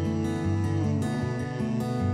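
Background music led by acoustic guitar.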